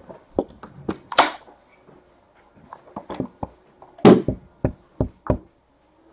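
Cardboard trading card boxes being handled and set down on a table: a run of sharp knocks and taps, the loudest about four seconds in.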